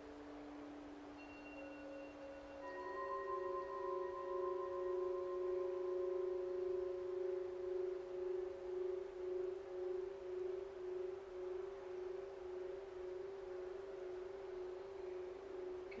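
Calm ambient background music of long, sustained ringing tones. A lower tone fades as a higher one enters about three seconds in, then holds with a slow, gentle waver.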